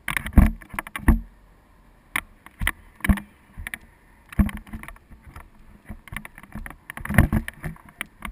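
Irregular clicks and knocks from a camera mount and the harness straps and carabiners of a tandem paraglider rattling in flight, with heavier low thumps from wind buffeting the microphone near the start and about seven seconds in.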